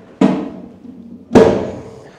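Two knocks about a second apart, the second louder, each ringing briefly, as an empty aluminium pannier case is handled and set down on a tiled floor.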